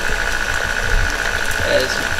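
KitchenAid stand mixer running steadily, its motor giving a constant whine as it beats the liquid cake batter while milk is added.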